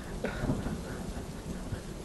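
Steady rain with a low rumble of thunder.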